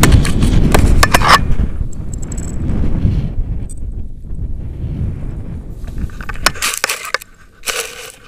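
Wind buffeting the microphone of a tandem paraglider coming in low to land, with crackling flaps of gear and harness. About six and a half seconds in the wind noise drops away and two short scraping, crunching bursts follow as the paraglider harness and legs slide onto dry grass at touchdown.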